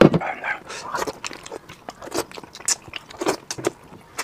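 Close-miked eating sounds: a man chewing braised fish with wet mouth clicks and lip smacks, in quick irregular bursts.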